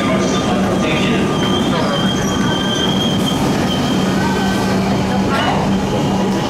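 A High Capacity Metro Train, an electric suburban train, rolls into the platform with a steady rolling rumble. Its wheels give a high squeal on the rails for about a second in the middle, and a steady low hum comes in later.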